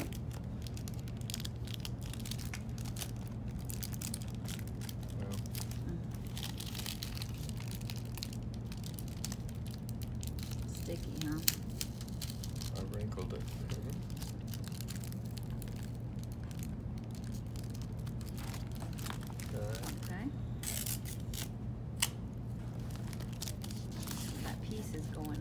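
Clear plastic book-jacket cover crinkling and rustling as it is folded and pressed around a hardback book, with tape being handled, over a steady low hum. Two sharp clicks stand out, one about halfway through and one near the end.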